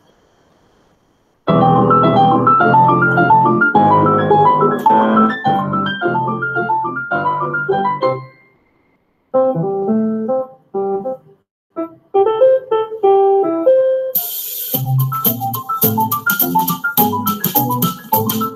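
Piano music on a commercial's soundtrack. Quick runs of notes begin about a second and a half in, break off briefly around eight seconds, and go on in sparser phrases. From about fourteen seconds in, a fast hissing, ticking rhythm joins the piano.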